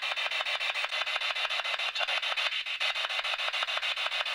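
Spirit box (a radio scanner sweeping rapidly through stations): a continuous hiss of static chopped into about eight to ten even pulses a second, listened to for voice-like fragments taken as spirit answers.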